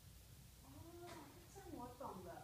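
A faint, distant voice talking in short bursts, starting about half a second in after a quiet moment.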